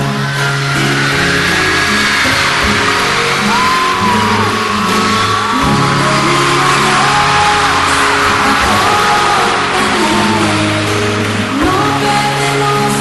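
Live pop band music played loud in a theatre, with held bass notes and chords. A dense wash of audience screaming and cheering runs over it.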